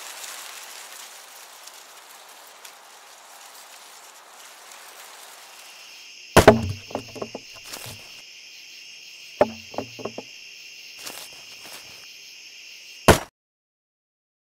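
A soft, even rain-like hiss, giving way about six seconds in to a steady chorus of crickets. Over the crickets come three heavy wooden thuds about three seconds apart, the first two followed by a few lighter knocks, and all sound cuts off abruptly just after the third.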